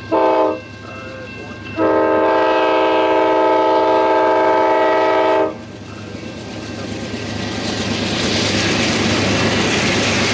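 Multi-tone diesel locomotive air horn on an Amtrak passenger train sounding a short blast, then a long blast of about four seconds that cuts off sharply, as the train nears a grade crossing. It is followed by a rising rumble and rattle of the locomotive and double-deck passenger cars passing close by on the rails.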